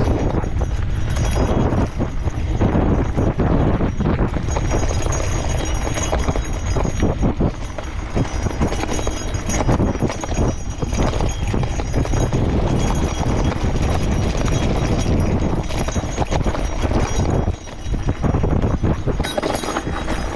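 Gravel bike riding over a rutted, rocky dirt road: wide knobby tyres crunching on loose gravel, with a constant clatter of knocks and rattles as the steel frame and fittings jolt over stones and ruts, over a steady low rumble.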